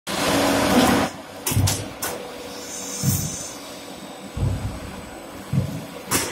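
Fully automatic hydraulic fly ash brick press and pallet stacker working. A loud rushing hiss for about the first second is followed by a run of heavy knocks and clunks at irregular intervals over a faint steady machine hum.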